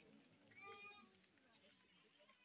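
Faint voices of a group praying aloud, with one high-pitched drawn-out call about half a second in.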